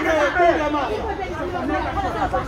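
Speech: several people's voices talking over one another.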